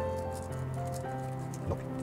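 Background music with steady held notes, under faint clicks of a plastic Bakugan figure's hinged parts being folded and snapped shut.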